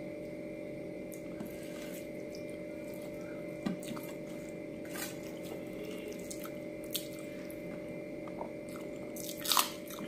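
Eating by hand from a steel plate: fingers squishing and mixing rice, with chewing through a full mouth. A few short sharp clicks come at intervals, the loudest cluster near the end, over a steady background hum.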